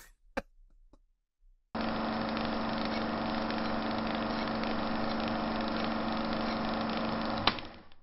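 A steady mechanical droning hum with a low pulse starts suddenly about two seconds in and runs evenly, ending with a sharp click shortly before the end.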